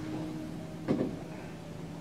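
Quiet room tone in a lecture hall with a faint steady hum, broken by one short sound about a second in.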